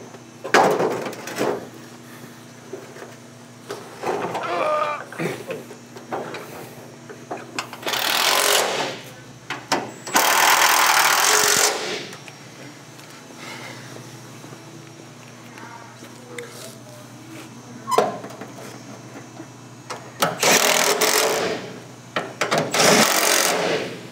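Handheld power tool fastening the hood hinge bolts, run in short bursts of about a second with one longer two-second run. There is a single sharp knock between bursts.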